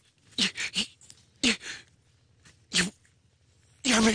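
A run of short, harsh, breathy vocal bursts, about five in four seconds, each under half a second, with quiet gaps between them; the loudest comes at the very end.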